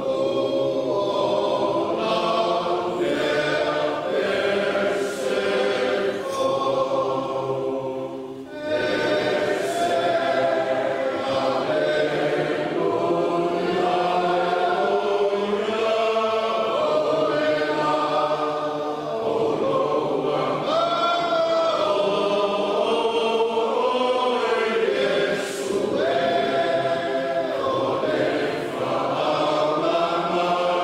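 A choir singing a hymn in long, held phrases, with one short break between phrases about eight and a half seconds in.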